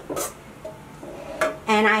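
A spoon clinking against dishware as cake batter is spooned into a pan: two short knocks at the start and a faint one about a second and a half in. A woman starts speaking near the end.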